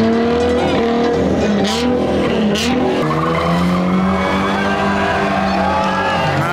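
A Toyota 86 being drifted: its engine revs up and down repeatedly under throttle while the rear tyres squeal and skid as they spin and smoke.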